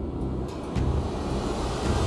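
Cinematic intro soundtrack: a heavy low rumble under a rush of noise that swells louder toward the end.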